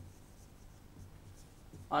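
Marker pen writing on a whiteboard: faint scratching strokes. A man's voice starts near the end.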